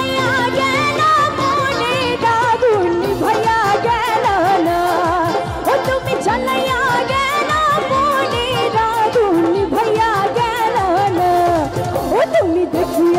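Live band music with a woman singing a wavering, ornamented melody into a microphone over a steady drum beat.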